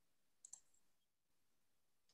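Near silence, with a faint, quick double click about half a second in: a computer mouse button being clicked.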